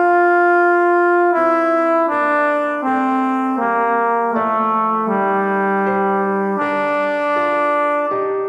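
Score-playback rendition of a choral tenor line: a steady, brass-like synthesized tone playing a slow melody that falls step by step, one held note after another with no vibrato.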